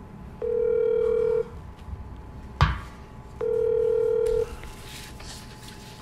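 Telephone ringback tone of an outgoing call: two steady one-second rings about three seconds apart while the call waits to be answered. A sharp click falls between the two rings.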